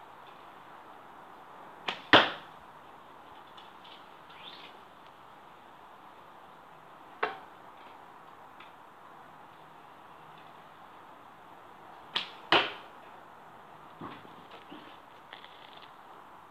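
Arrows shot from a bow striking cardboard archery targets: twice a short click followed a quarter second later by a louder smack as the arrow hits, about two and twelve seconds in, and a single sharp hit around seven seconds in. A few faint ticks follow near the end.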